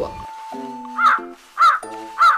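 Cartoon crow-cawing sound effect, two short caws about half a second apart, over light background music: the awkward-wait gag used to show time passing.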